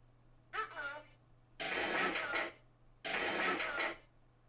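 Opening of a produced song: short sampled vocal snippets with gaps between them. First a thin, telephone-like voice clip, then two louder, fuller voice clips that sound alike.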